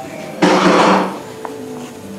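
Spoonful of batter dropped into hot frying oil: a sudden loud sizzle about half a second in that dies down within about half a second.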